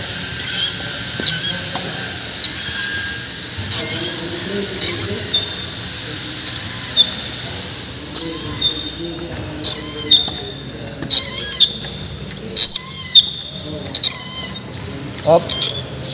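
Hydraulic crimper being pumped to press a cable lug, its ram rising with each stroke until the lug is compressed: short squeaks about once a second over a steady high whine. The whine falls away about seven seconds in, and sharper, irregular clicks and knocks follow.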